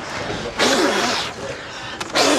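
A person blowing a hard puff of air close to the skin: a breathy hiss that starts about half a second in and lasts most of a second, with softer breathing before and after it.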